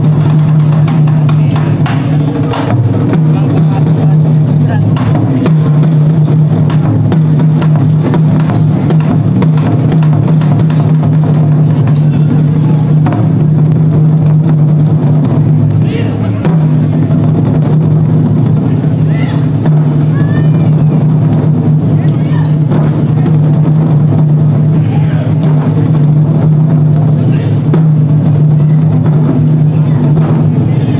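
Taiko drum ensemble playing live: many drums struck together in a loud, dense, unbroken beat, heavily overdriven in the recording, easing off briefly about two and a half seconds in and again around sixteen seconds. Voices call out over the drumming at times.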